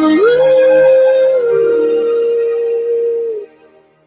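The closing of a song on a radio broadcast: one long held note slides up, steps down slightly about a second and a half in, and cuts off about three and a half seconds in.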